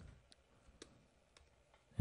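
Near silence with about three faint, sharp clicks spread over two seconds: a stylus tapping on a pen tablet as a word is handwritten.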